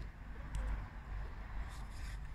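Faint, steady low rumble of background noise, with one light click about half a second in.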